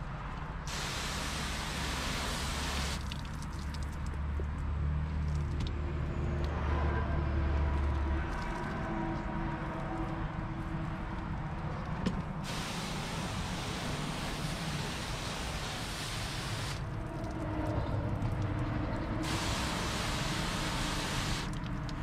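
Water spraying from a hose onto a car door panel in three rinsing bursts, each a steady hiss that starts and stops abruptly, with quieter washing sounds and a low hum between them.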